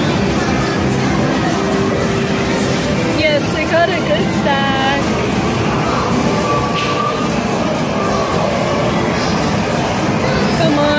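Busy arcade ambience: a steady din of game machines, background voices and machine music, with brief warbling electronic tones about three to five seconds in.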